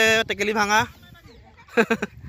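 A long drawn-out shout from a voice, held for about a second with its pitch bending at the end, then a short second shout near the end.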